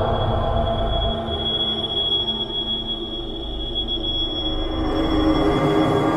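Dark ambient instrumental music: a low rumbling drone under a sustained high, thin screeching tone like squealing metal, which fades out about four and a half seconds in as a new mid-pitched layer comes in near the end.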